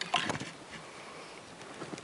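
A brief rustling crunch in dry grass and brush, loudest just after the start, then a faint, even outdoor background.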